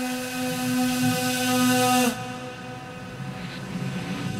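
Electronic ambient music: a loud held drone tone with a bright hissing layer over it, which cuts off sharply about two seconds in, leaving a quieter, grainy textured layer.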